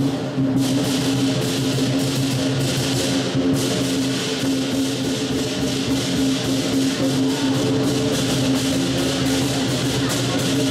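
Lion dance percussion: drum, cymbals and gong playing a steady, fast rhythm, with the metal ringing on under the strikes.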